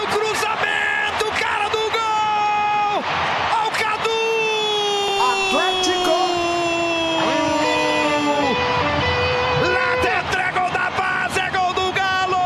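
A drawn-out goal cry from a radio football commentator, held for several seconds at a time and sliding slowly down in pitch, with music underneath.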